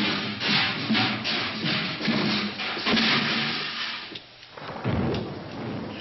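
Suspenseful film score mixed with storm sound effects, with a low thud about five seconds in.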